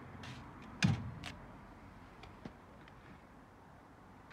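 Caravan handbrake lever on an AL-KO hitch being pulled on: a few mechanical clicks, the loudest a sharp clunk about a second in.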